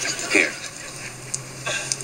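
Sitcom dialogue: a man says a single short word, then a brief lull with a faint steady hum, and another short voiced sound near the end.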